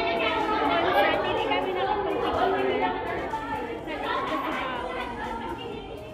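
Indistinct chatter of people talking.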